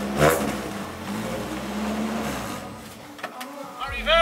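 A car engine running steadily, fading away about three seconds in.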